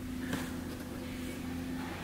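A steady low hum, with a faint click about a third of a second in.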